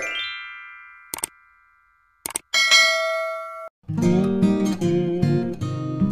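Intro sound effects: a chime that rings and fades away, two short clicks, and a second chime that is held briefly and cuts off suddenly. Then strummed acoustic guitar music begins about four seconds in.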